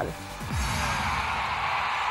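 TV sports programme transition sting: a low sweep falling in pitch about half a second in, followed by a steady noisy wash.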